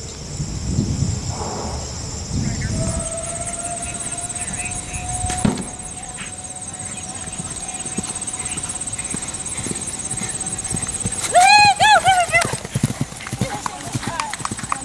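Hoofbeats of a horse galloping on turf, growing plainer near the end. About two-thirds of the way through comes a loud, wavering call lasting about a second.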